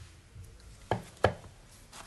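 Two sharp knocks about a third of a second apart, the second louder: a small metal thermal expansion valve being set down on a tabletop.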